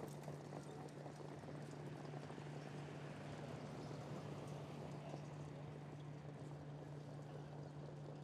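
Faint hoofbeats of standardbred pacers in a harness race, running on the track, under a steady low hum.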